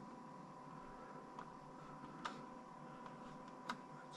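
Computer mouse clicking three times, faintly, over quiet room tone with a steady electrical hum.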